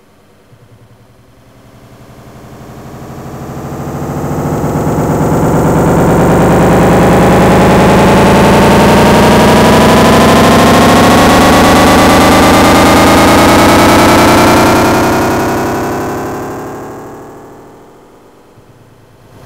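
Dense electronic synthesizer drone with many tones gliding slowly upward. It swells in over the first few seconds, holds loud, then fades away near the end.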